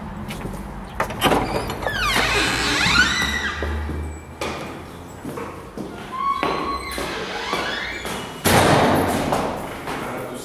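Heavy wooden entrance door being opened: a latch click, then creaking hinges that squeak in falling and rising glides, and a loud thud near the end as a door swings shut.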